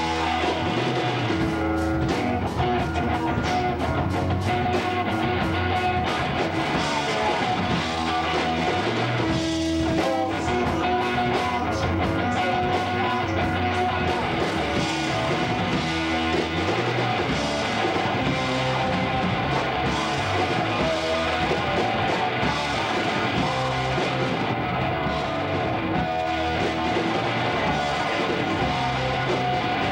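Live rock band playing: electric guitar, bass guitar and drum kit together at a steady, loud level.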